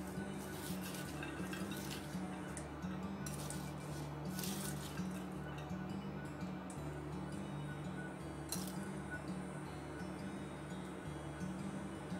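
Quiet background music with a slow, stepping bass line, over a few light clinks and rustles as chopped onion is scattered by hand into a ceramic baking dish.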